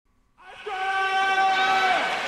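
A horn-like chord of several steady tones, starting about half a second in and held to the end.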